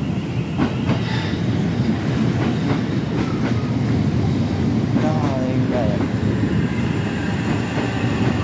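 Electric passenger train running past on the track, a steady rumble of wheels on the rails.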